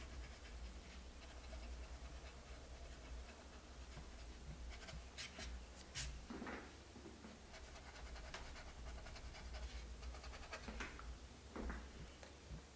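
Quiet room with a steady low hum and the faint scratch of a paintbrush working paint on the board. A few small clicks and handling noises come around the middle.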